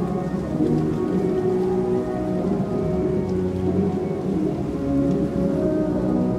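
Muffled pop-rock music with its highs cut off, as if played in the next room, under steady rain.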